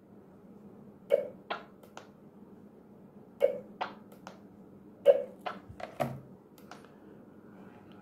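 Sharp clicks in three quick groups of three or four, as the wireless intercom's talk button is keyed and the nearby radios respond, over a faint steady hum.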